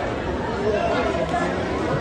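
Indistinct chatter of many voices, with spectators' voices rising and falling over a steady background din.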